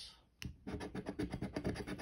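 A large metal coin scratching the latex coating off a scratch-off lottery ticket in quick, repeated strokes. The strokes start about half a second in, after a brief silence.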